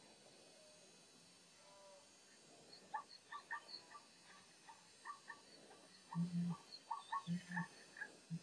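Animal calls: short, high calls repeating irregularly from about three seconds in, joined near the end by a few louder, low-pitched calls.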